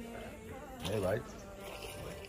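Flies buzzing steadily around cattle.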